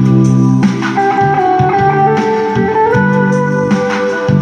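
Electric guitar playing the instrumental intro of a song in long held melody notes, with a sustained organ-like keyboard accompaniment and bass underneath. The held lead note steps up in pitch about three seconds in.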